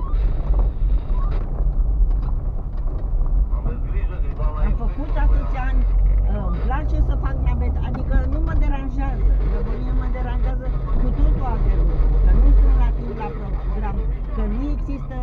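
Low rumble of a car's engine and tyres heard from inside the cabin as it drives off over a rough surface, easing slightly near the end.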